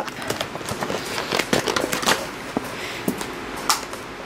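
Product packaging being opened by hand: irregular crinkling, crackling and sharp clicks of the wrapping being pulled and torn open.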